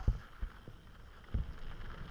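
YT Capra mountain bike rolling down a gravel trail, heard through its mounted action camera: a few low knocks and thuds as the bike and mount take bumps, the loudest just after the start and another about a second and a half in, over a quiet rumble of tyres on gravel.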